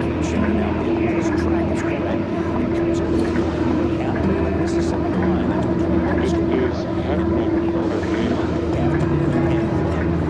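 A steady droning hum with held low tones, overlaid with indistinct voices in which no words can be made out.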